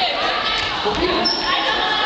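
Several voices talking and calling over one another, echoing in a large sports hall.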